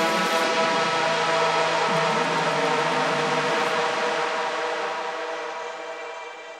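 Psytrance music in a beatless passage: a dense, sustained synth chord over a hissing noise wash, with a low bass note that drops out about two seconds in. The whole sound fades away over the last second or so.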